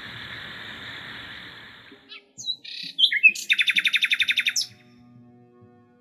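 A steady hiss fades out over the first two seconds. Then a bird chirps a few times and gives one loud, fast trill of about a dozen notes.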